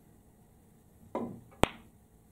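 A snooker cue's tip striking the cue ball about a second in, a short dull knock, followed half a second later by a single sharp click as the cue ball hits an object ball; the click is the loudest sound.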